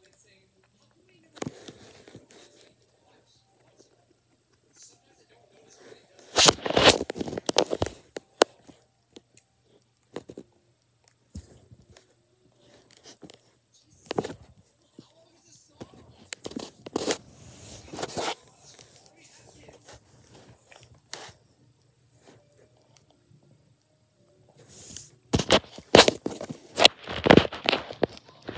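Someone eating a burger close to the microphone: bites and chewing, with crinkling and scraping from handling the food and the phone. The sounds come in scattered, irregular bursts, the loudest lasting a couple of seconds about six seconds in.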